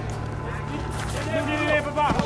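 Raised voices over a steady low rumble, with a brief sharp crack about a second in.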